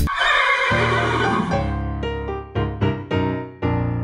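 A horse whinny over the first second and a half. Music comes in under it: a low held note, then a run of short struck notes.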